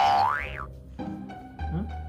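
Playful background music with a steady bass line, opened by a cartoon sound effect that glides quickly up in pitch and drops back down in the first half-second.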